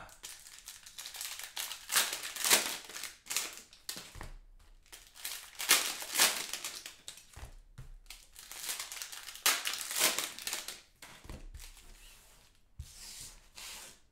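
Cellophane wrappers of 2018-19 Panini Prizm basketball cello packs crinkling and tearing as the packs are handled and torn open, in irregular short bursts with brief quieter gaps.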